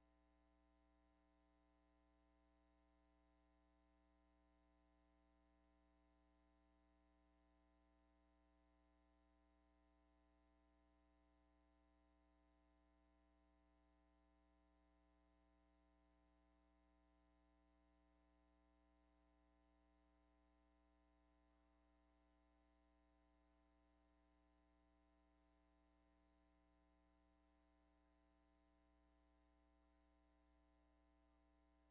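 Near silence: a faint, steady hum on the broadcast audio.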